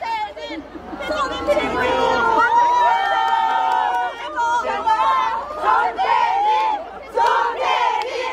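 A crowd of fans shouting and cheering, many voices overlapping, with several long drawn-out calls in the first half and shorter shouts after.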